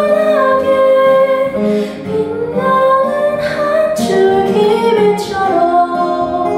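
A woman singing a slow ballad line in long held notes that glide between pitches, accompanying herself on acoustic guitar.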